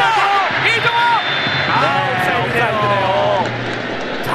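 A TV football commentator's excited voice, with drawn-out exclamations, over steady stadium background noise.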